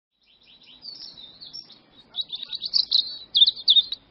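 Birds chirping in quick, high twittering calls, sparse at first and busier from about halfway through, then cutting off suddenly at the end.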